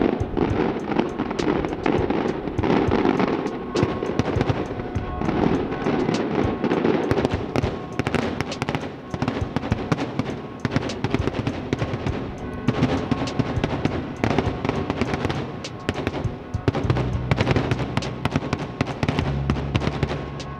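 Daytime aerial fireworks crackling, with a dense run of sharp pops in quick succession throughout, over background music whose bass comes up near the end.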